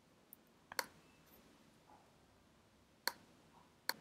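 Three short computer mouse clicks over near-silent room tone, one about a second in and two close together near the end.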